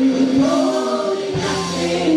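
Gospel praise and worship singing: several women singing together into microphones, holding long sustained notes.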